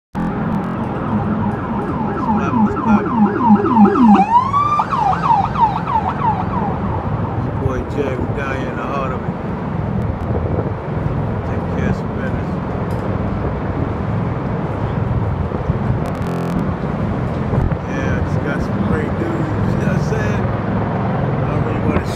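An emergency vehicle siren in a fast warbling yelp, loud, swooping down and back up about four seconds in and fading out by about six seconds. After that, a steady din of city traffic.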